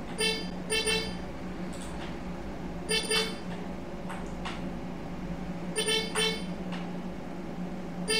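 A vehicle horn sounding short toots, mostly in quick pairs, several times over a steady low hum.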